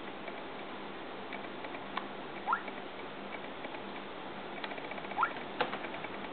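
A fingertip tapping and sliding on a media player's touchscreen over a steady low hiss: a few faint taps, and two short rising squeaks about halfway through and near the end.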